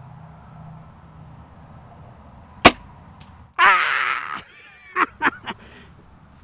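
A single sharp snap of a crossbow firing, its string released about two and a half seconds in. A man's excited whoop follows a second later, then a few short bursts of laughter.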